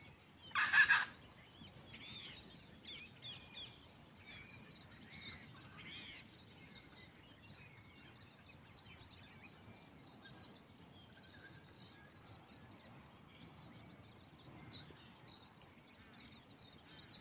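Wild birds calling and chirping all around, many short high chirps and sweeping notes. One loud, rapidly pulsed call stands out about a second in.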